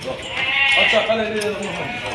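A sheep bleating: one loud, wavering bleat starting about half a second in and lasting well over a second.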